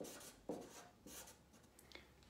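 Marker pen writing on flip-chart paper: a few short, faint strokes.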